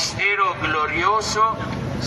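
Speech: a man's voice, amplified through a handheld microphone and loudspeakers.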